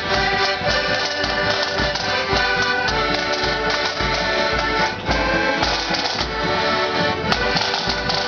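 Marching accordion band playing: piano accordions carry the tune in sustained chords over a steady bass drum beat.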